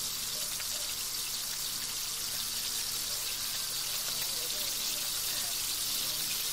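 Chicken pieces sizzling in hot oil in a wok, a steady crackling hiss, as they are stirred with a wooden spatula. The chicken is sautéing in its own fat and juices before any water is added.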